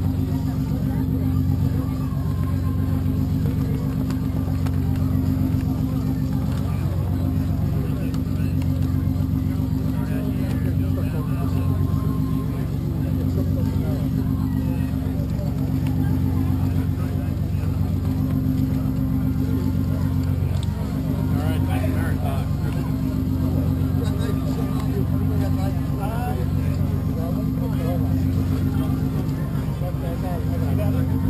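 A steady low machinery drone made of several hum tones that pulse slowly and evenly, with indistinct voices chattering underneath.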